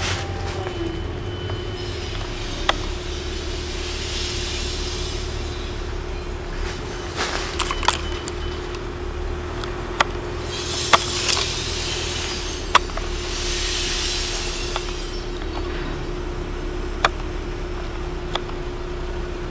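Telehandler's diesel engine running steadily, a low rumble with a constant hum, with about seven sharp clicks scattered through it and a few short swells of hiss.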